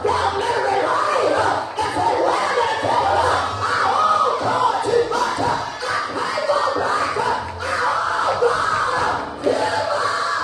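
A woman shouting and crying out into a microphone over the hall's speakers, with other voices calling out around her and a faint music bed underneath.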